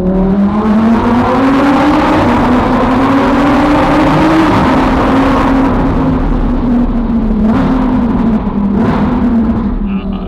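Lamborghini Huracán's V10 engine driven hard through a road tunnel: the engine note climbs in pitch for about four seconds, drops at a shift, then holds nearly level under load. Two brief sharp cracks sound near the end.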